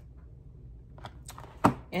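Cardboard toothpaste boxes being handled on a desk: a couple of light taps, then one sharp knock about a second and a half in.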